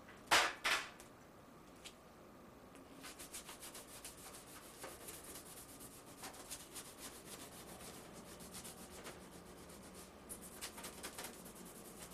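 Two sharp clicks from the gas stove as its knob is worked, then a long run of quick, crisp scraping strokes from about three seconds in, from hands working at the kitchen counter.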